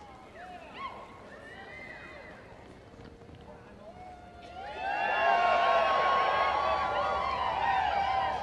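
Arena spectators whooping and hollering, a few voices at first, then swelling into loud, many-voiced cheering about four and a half seconds in as the reining horse makes its sliding stop.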